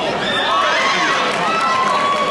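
Several voices of coaches and spectators shouting and calling out at once during a kickboxing bout, overlapping, with one long drawn-out call near the end.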